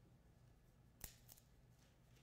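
Faint, crisp snaps of a large communion wafer being broken at the altar at the fraction: one sharp crack about a second in, followed by a smaller one, in an otherwise quiet church.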